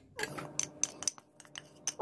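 A metal tuna can and a spoon tapping and scraping against a glass mixing bowl as canned tuna is emptied into it: a string of light, sharp clinks.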